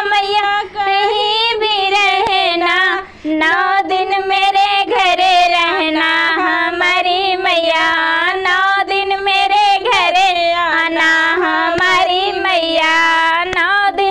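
Women singing a Hindi devotional bhajan to the goddess Durga, one continuous high sung melody with brief breaths between lines, clapping along.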